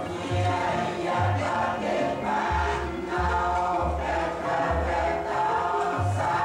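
Many voices chanting Buddhist prayers in unison, sung on sustained pitches in a steady rhythm and carried over a loudspeaker system.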